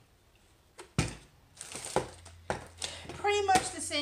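Plastic-and-aluminium rotary paper trimmer being handled and set aside: one sharp knock about a second in, then a brief rustle and a few lighter clicks. A woman starts speaking near the end.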